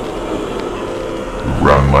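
A steady droning background, then about one and a half seconds in a loud shouted voice rising and falling as it calls out 'Run!'.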